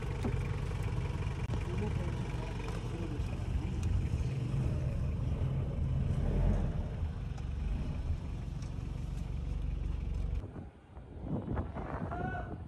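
An old SUV's engine idling steadily just after start-up, a low even rumble that cuts off suddenly about ten seconds in.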